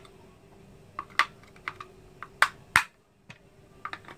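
Irregular sharp plastic clicks and clacks as the hard plastic body of an Aputure Amaran 198 LED light panel is handled and its parts are fingered, about eight in all, the loudest about three-quarters of the way through. A faint steady hum runs underneath.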